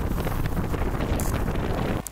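Wind buffeting the microphone of a camera on a moving motorbike: a steady, deep rushing rumble.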